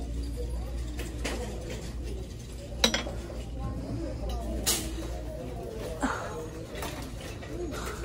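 A small ceramic bowl clinking against other dishes as it is set back on a shelf: one sharp clink about three seconds in, then a couple of lighter knocks, over a low steady hum.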